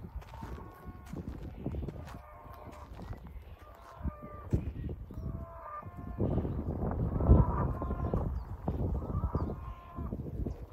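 A horse grazing: crunchy bites and tearing of grass in quick irregular clicks. Short pitched calls from other animals sound in the distance, over a low outdoor rumble.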